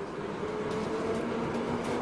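London Underground train running: a steady noise of moderate level with a faint low hum through it.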